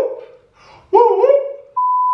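Two high, wavering voice-like calls, then a steady pure test-tone beep that starts sharply near the end. The beep is the tone that goes with a colour-bars test card.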